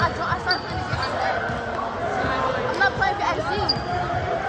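A basketball being dribbled on a gym floor, repeated thuds amid overlapping voices of players and spectators, echoing in a large gym.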